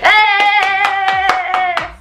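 A single high sung note held steady for nearly two seconds over quick rhythmic hand clapping, about five claps a second, cutting in suddenly.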